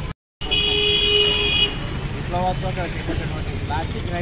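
A vehicle horn honks once, a steady, loud blare lasting about a second and a half, right after a brief dropout in the audio.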